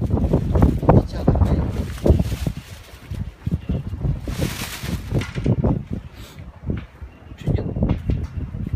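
Wind rumbling on the microphone under indistinct voices, with a brief burst of hiss about four and a half seconds in.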